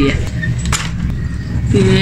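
Low wind rumble on the microphone, with a single sharp click about three quarters of a second in.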